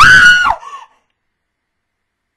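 A young woman's short, loud, high-pitched scream close to the microphone. It rises sharply, holds for about half a second and then falls away, with a brief weaker cry after it.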